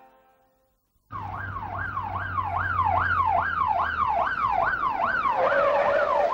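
Police car siren wailing rapidly up and down, about two and a half sweeps a second. It starts suddenly about a second in over a low hum, and near the end the sweeps settle onto a lower tone.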